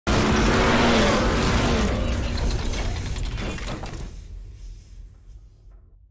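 Intro sound-effect sting: it starts suddenly and loudly with a noisy rush over a low hum, then fades away over about five seconds.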